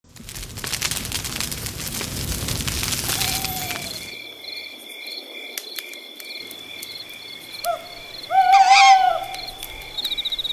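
Campfire crackling with dense snaps for about four seconds, then a night forest ambience of steady, pulsing cricket chirping, with an owl hooting near the end, the loudest sound of the stretch.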